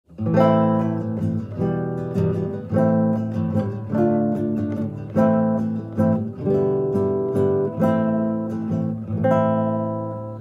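Nylon-string classical guitar strummed through a chord progression, a new chord struck about every second and left ringing between strums.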